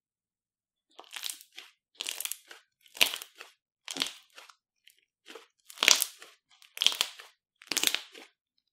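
Fluffy slime being squeezed and kneaded by hand, giving short bursts of squishing, crackling pops of trapped air each time the hands press down, about once a second after a silent first second.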